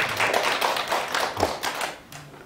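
Audience clapping, a dense patter of many hands that fades out near the end.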